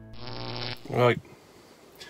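A man's voice: a brief buzzy, hum-like sound, then a single loud 'Right' rising in pitch about a second in.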